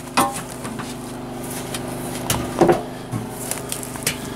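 Footsteps treading down loose garden soil, a few dull thuds and scuffs, over a steady low hum.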